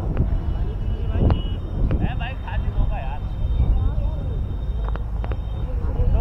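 Wind rumbling on the microphone, with distant voices calling out across the field around the middle and a few faint clicks.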